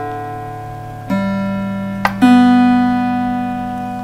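Guitar open strings plucked one at a time in rising order and left to ring together. A new note starts about a second in and another just after two seconds, each fading slowly.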